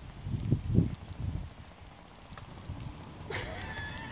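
Wood fire with a piece of magnesium plate burning in it, crackling faintly, with a few low rumbling surges in the first second. A short voice sound begins near the end.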